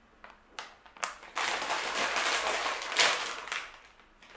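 A plastic snack bag crinkling and rustling as it is handled. A few light clicks come first, then a dense, loud crinkle for about two seconds.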